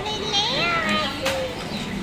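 A little girl's high-pitched voice making drawn-out, sing-song sounds, the first rising steeply in pitch and a shorter one following.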